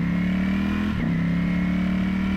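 A 2019 Ducati Panigale V4S's V4 engine accelerating hard. It pulls up in pitch in first gear, drops sharply on an upshift to second about a second in, then climbs again.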